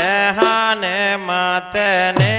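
Devotional folk song, a sumirani to Maa Sharda: a male voice sings long held notes over a steady drone, with a few drum strokes.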